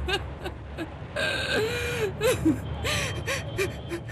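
A young woman sobbing and gasping for breath in short broken cries, with one longer, loud wail about a second in.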